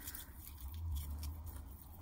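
Faint light clinks of a metal chain necklace being handled and untangled, over a low steady hum.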